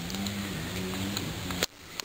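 A steady low background hum with faint camera-handling noise, ended about one and a half seconds in by a sharp click and a sudden drop to near quiet where the recording cuts.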